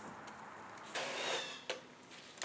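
Gloved hands squeezing and working a handful of wet Mizzou castable refractory, a gritty concrete-like mix with aggregate in it. A rough crunching rustle comes about a second in, then a single short tap.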